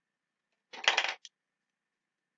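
A short clatter of a hard plastic craft tool being picked up off the cutting mat about a second in, followed by one small click.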